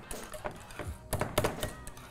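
Wire balloon whisk beating thick chocolate ganache by hand in a glass bowl, giving a few light, irregular clicks and ticks as the wires knock the glass. The ganache is thickening toward a whipped-cream texture.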